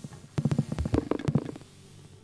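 A fast, irregular flurry of soft percussive taps and knocks with a low, ringing body, one tap at the start and about a dozen more in quick succession, dying away into a low hum near the end.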